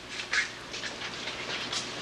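Faint, scattered shuffling and footstep sounds of several people walking across a room, a few short scuffs spread over the two seconds.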